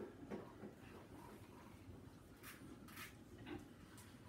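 Faint pouring of a shaken egg-white whiskey sour from a cocktail shaker into a rocks glass over ice, with two brief soft splashes about two and a half and three seconds in.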